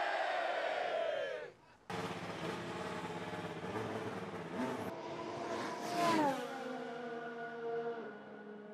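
A crowd cheering and shouting, fading out about a second and a half in. Then a Formula One car's engine runs steadily out on the track, its pitch dropping sharply as it passes about six seconds in.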